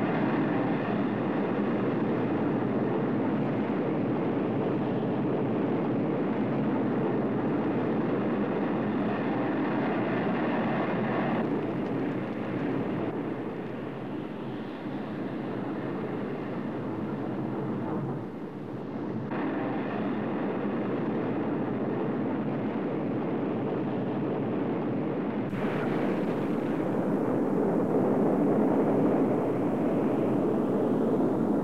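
Rocket motors of ballistic missiles lifting off: a loud, continuous rushing roar. Its tone shifts abruptly at several points, with a slightly quieter stretch in the middle.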